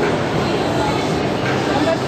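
Steady babble of many voices in a busy indoor hall, with no single speaker standing out.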